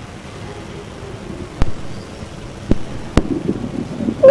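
Steady background noise of a busy room, broken by three sharp clicks: one about a second and a half in, then two more half a second apart near the end.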